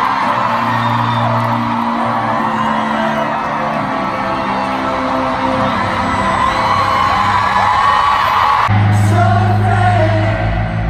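Live K-pop concert heard from inside a stadium crowd: amplified singing over the band's backing music, with fans screaming and whooping throughout. Near the end it cuts abruptly to a different song with a heavy bass note.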